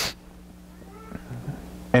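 A brief breathy laugh right at the start, then a pause holding only a low steady hum and a few faint, indistinct sounds.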